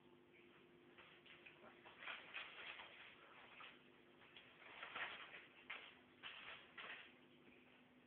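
Faint, irregular rustling and crinkling of a sheet of newspaper as a Bedlington terrier puppy worries at it, in short scratchy bursts over a faint steady hum.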